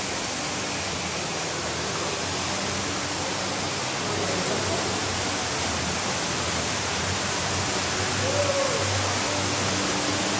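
Ruby Falls underground waterfall: a steady, unbroken rush of water falling into its pool inside the cave.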